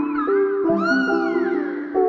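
Background music of plucked notes, with a cat meowing over it: a short call at the start, then a longer call that rises and falls in pitch.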